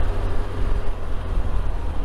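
Touring motorcycle riding on a wet road: a steady low rumble of wind and engine on the bike-mounted microphone, with a hiss of tyres on the damp surface.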